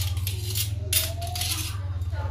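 A few sharp clinks of kitchenware about half a second and a second in, over a steady low hum.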